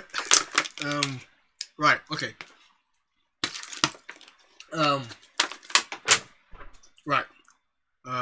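A man's voice in short bursts of laughter and exclamations, broken by a brief pause about three seconds in.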